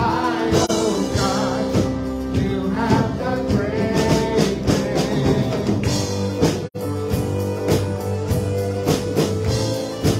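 Live worship band playing a song, with women singing into microphones over a drum kit and keyboard. The whole sound cuts out for a split second about two-thirds of the way through.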